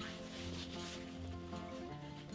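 Soft background music: a few held notes over a low bass line, changing every half second or so.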